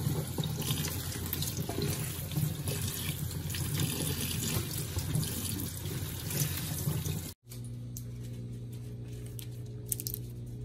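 Water from a kitchen faucet running onto a bunch of long green leaves being rinsed over a stainless steel sink. The running water stops abruptly about seven seconds in.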